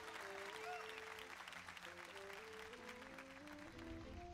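Studio audience applauding over band music playing a slow melody that steps from note to note. The applause is strongest at the start and fades out toward the end.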